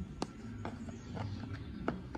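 A few light clicks and knocks of hard plastic trim being handled and pushed into place under a car's front end, over a low steady hum.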